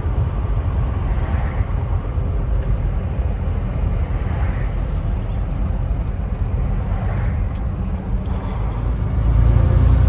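Truck's diesel engine running with road noise, heard from inside the cab while driving, as a steady low rumble that grows louder near the end.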